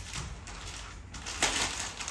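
Gift wrapping paper rustling and tearing as presents are unwrapped, with a louder rip about one and a half seconds in.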